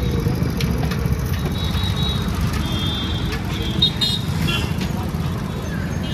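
Street traffic noise: a steady low engine rumble from nearby vehicles, with a few short high horn toots about halfway through.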